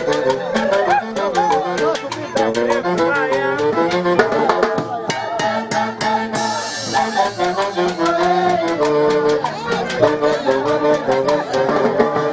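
Live Andean fiesta band of saxophones, clarinet, violin and harp over a drum kit, playing a dance tune with a steady drum beat. A cymbal crash comes about six seconds in.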